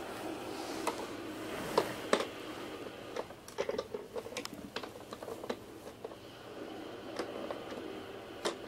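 Irregular small plastic clicks and taps, a few dozen over several seconds, as a baby handles and presses the knobs and buttons of a plastic activity toy.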